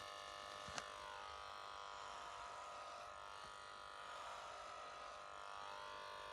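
Corded electric hair clipper running with a steady buzz; its pitch sags briefly twice, and there is a single click about a second in.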